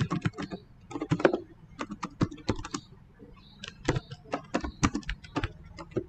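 Typing on a computer keyboard: quick runs of key clicks with a short pause about halfway.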